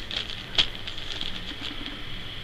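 Clear plastic poly bag around a folded tank top crinkling lightly under a hand: scattered soft crackles, one a little sharper about half a second in.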